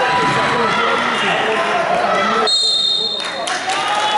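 A basketball bouncing on an indoor court amid the echoing chatter of players and spectators in a sports hall.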